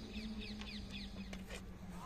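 A bird calling a quick run of short, downward-sweeping chirps, about five or six a second, which stop about three-quarters of the way through, over a steady low hum.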